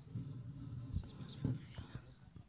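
Low whispered speech close to a table microphone, with a couple of handling knocks as the microphone is moved closer to the speaker.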